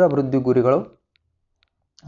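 A man's lecturing voice speaking Kannada for about a second, then a pause.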